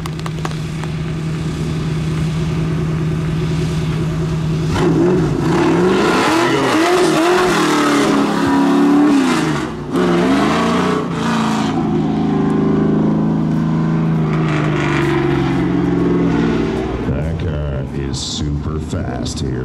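Sportsman-class stock car engine idling steadily, then revved up and down again and again as the car pulls away and drives off, its pitch rising and falling.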